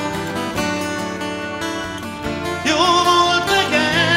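A live rock band playing, guitars in front, with a male voice singing a line about two and a half seconds in.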